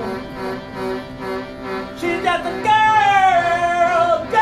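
A man singing live over a pulsing, repeated note from a small hand-held wooden box instrument; the first half is mostly the repeated note, then the voice comes in with a held line that slides slowly downward.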